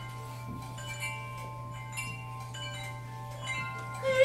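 Soft, sparse strikes on bell-like metal percussion, each leaving long, overlapping ringing tones at several pitches, over a steady low hum.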